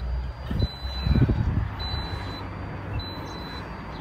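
A high electronic beep repeating evenly, about one half-second beep every 1.2 seconds, over low rumbling handling noise that swells about a second in.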